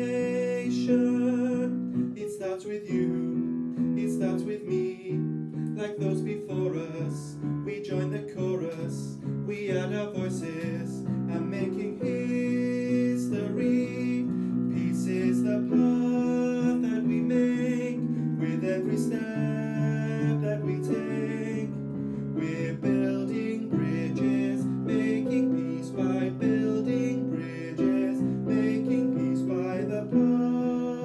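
A man singing a slow, gentle song over instrumental accompaniment, phrase after phrase without a break.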